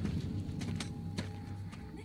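Quiet film soundtrack background: a low steady hum under a faint held high tone, with a few light clicks.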